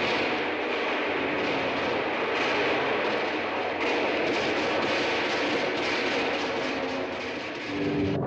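A loud, steady roaring rush of noise from an old film soundtrack, with faint held tones underneath.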